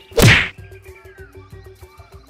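A single short, loud edit sound effect about a quarter of a second in, marking a scene change, over background music with a steady beat.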